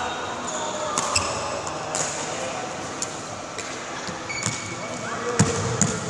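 Badminton rally: sharp racket strikes on the shuttlecock about once a second, mixed with short squeaks of court shoes on the floor.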